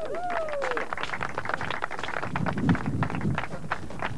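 A small group clapping, with a falling cheer at the start and voices murmuring under the clapping in the second half.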